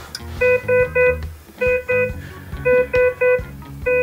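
Medical patient-monitor alarm beeping: short, identical electronic tones in a repeating pattern of three beeps then two, the pattern of a high-priority alarm.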